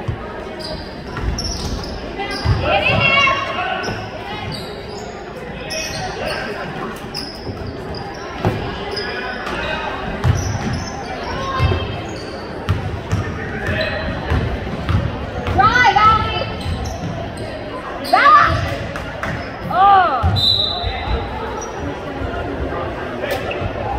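Indoor basketball game: a ball bouncing on a hardwood gym floor, sneakers squeaking in short sharp chirps a few times in the second half, and voices from players and spectators, all echoing in the gym.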